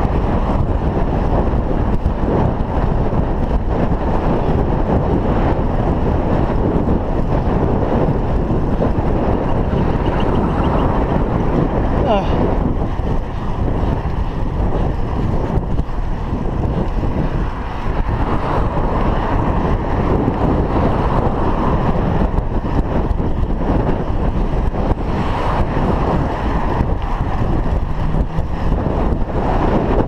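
Wind buffeting the microphone of a chest-mounted GoPro Hero 3 on a moving bicycle: a steady loud rush with a deep rumble, with a brief thin rising chirp about twelve seconds in.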